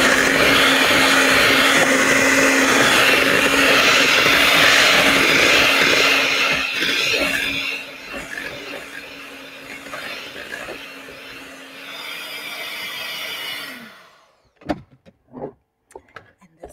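Electric hand mixer running steadily, its beaters mixing cream cheese and salsa into a dip. It turns quieter about halfway in, then stops near the end, followed by a few brief knocks.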